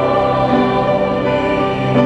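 Choir singing held chords that shift every second or so.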